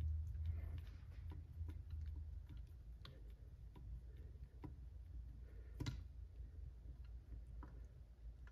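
Faint scattered clicks and taps of small hardware being handled as a screw with a brass insert is fitted by hand into an RC crawler's steering knuckle, with a sharper click about six seconds in, over a low steady hum.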